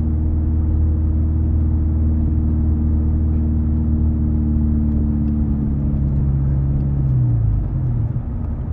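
Four-wheel-drive car engine heard from inside the cabin, droning steadily while driving. From about six seconds in, its pitch falls as the car slows, and it is quieter near the end.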